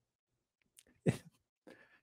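A man's short stifled laugh, one brief burst about a second in after a pause, with a faint breath after it.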